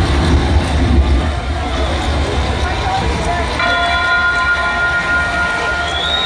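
Concert intro playing through an arena PA: a deep rumble for about the first two seconds, then a steady held tone with overtones from about three and a half seconds in, over crowd shouting.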